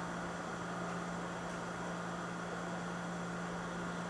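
Steady background hum and hiss of room noise, with no distinct events.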